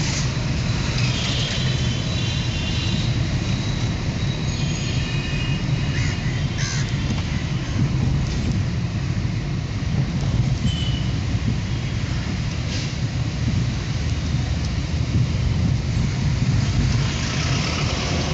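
Steady low rumble of a car's engine and tyres heard from inside the cabin while it drives through city traffic, with a few brief high-pitched tones from the traffic outside.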